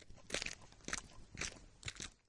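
Cartoon footstep sound effects: a person walking at an even pace, four steps about half a second apart.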